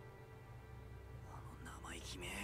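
Faint dialogue from the anime episode playing quietly, coming in about halfway through, over a steady low hum.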